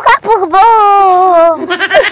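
A woman wailing in one long, drawn-out cry whose pitch slowly falls, breaking into short sobbing bursts near the end.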